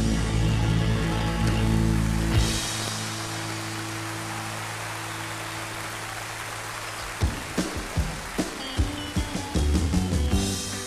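Live rock band holding a final sustained chord that slowly fades, over audience applause. About seven seconds in, sharp drum strikes and guitar start the next number.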